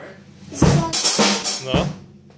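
Acoustic drum kit played with sticks: a quick run of snare, kick and cymbal hits starting about half a second in, after a brief quiet moment.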